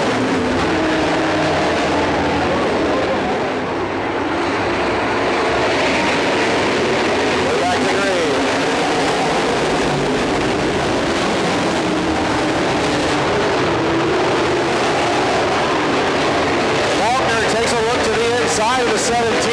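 Several dirt modified race cars' V8 engines running together as the cars circle the dirt track, a steady, continuous engine noise. A public-address announcer's voice comes over it at times, around halfway and again near the end.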